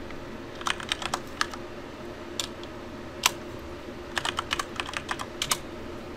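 Typing on a computer keyboard: two short runs of keystrokes with a couple of single taps between them, over a faint steady hum.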